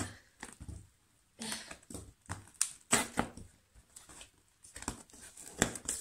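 Scissors cutting through packing tape on a cardboard box: a run of irregular snips, scrapes and crinkles of tape and cardboard, with a short pause about a second in.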